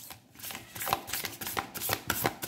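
A deck of tarot cards being shuffled by hand: a quick, irregular run of short clicks and slaps as the cards pass between the hands.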